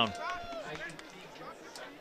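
A faint, distant voice with a few gliding pitches over quiet outdoor stadium ambience, fading away in the second half.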